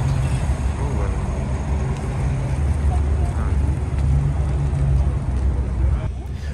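A steady low rumble of car engines with indistinct crowd voices behind it.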